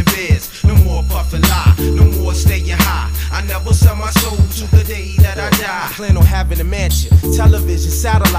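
A 90s underground hip-hop track: a rapper's vocal over a steady drum beat and bass line. The bass drops out briefly near the start and again about six seconds in.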